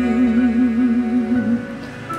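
A man's held vocal note with a steady, wide vibrato over a karaoke ballad backing track, the end of the song; the voice stops about one and a half seconds in and the backing chords carry on more quietly.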